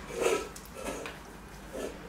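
A dog making a few short, soft sounds: one near the start, one about a second in and one near the end.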